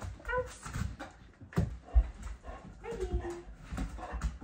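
A puppy whining in short high cries, one about half a second in and a falling one about three seconds in, with dull thumps on the floor between them, the loudest about two seconds in.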